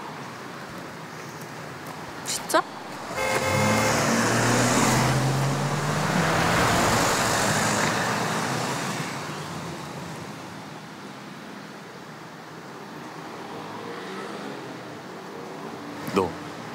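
A car horn sounds briefly about three seconds in. A car then drives past close by: its engine and tyre noise swell over a few seconds and fade away.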